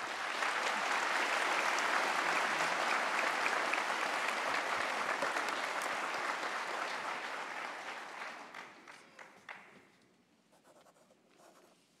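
Audience applause that starts at once, holds steady for about eight seconds and dies away over the following two.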